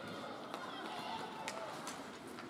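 Ice rink sounds during a hockey game: the scrape of skates on the ice, with a few sharp clicks of sticks and puck, under the murmur of spectators' voices.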